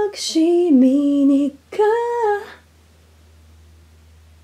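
Unaccompanied solo singing voice holding a few sung notes, the pitch stepping down and then rising again. It stops about two and a half seconds in, leaving only a faint low hum.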